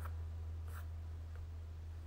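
Quiet pause: a steady low hum, with a faint click at the start and a short, soft scratch about three-quarters of a second in.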